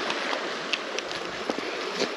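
Creek water running over a shallow riffle, a steady rushing, with a few light clicks on top.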